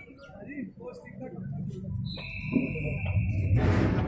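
A single long, high-pitched steady tone of about a second and a half, starting about two seconds in, over the voices of people around an outdoor court. The voices and background noise grow louder through the second half.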